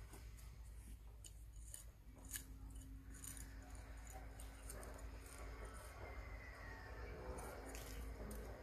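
Faint clicks and scrapes of a small stick poking and working loose potting soil in a large glazed pot. About two seconds in, a faint steady hum and a low background murmur come in.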